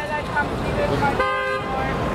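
A car horn toots briefly about a second in, a short steady note over crowd murmur and street noise.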